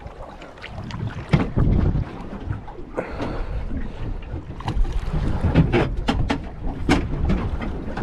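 Wind buffeting the microphone and water slapping against a small boat's hull, with a run of short sharp knocks and splashes, thickest from about five to seven seconds in.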